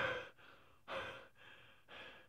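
A man breathing heavily through his open mouth, three breathy huffs about a second apart.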